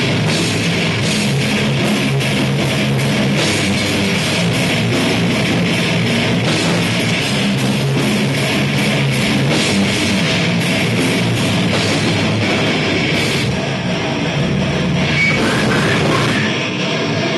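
Live slam death metal band playing: heavily distorted electric guitars with a drum kit hammering fast, close-set hits, loud and continuous, thinning out a little near the end.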